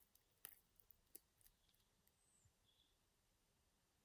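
Near silence with a handful of faint clicks, mostly in the first second and a half, from the crown of an Eterna Kontiki Four Hands being worked to turn the hands through its ETA 2836 automatic movement.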